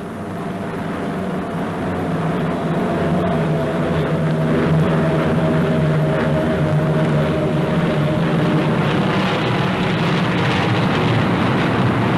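Piston engines of propeller-driven bombers droning steadily in flight, swelling in level over the first few seconds, with a faint higher tone that drifts slowly lower.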